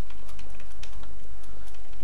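Typing on a computer keyboard: a quick run of key clicks, about six a second, over a steady low hum.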